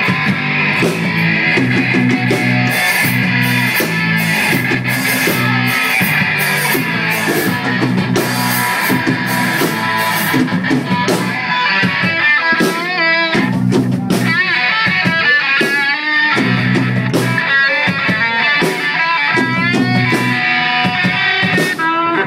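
Live rock band playing an instrumental break: a lead electric guitar over bass and drum kit, with bent, wavering notes from about halfway on.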